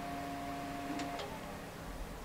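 Optical disc drive in a PC tower opening: a steady motor hum that stops just over a second in with a couple of light clicks.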